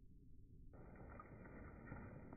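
Near silence: faint low rumbling noise that turns a little brighter under a second in.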